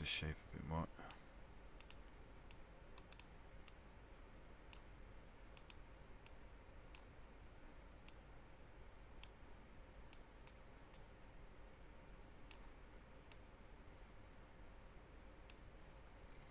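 Computer mouse button clicks, about twenty short sharp clicks at irregular intervals, sometimes two or three in quick succession, over a faint steady low hum.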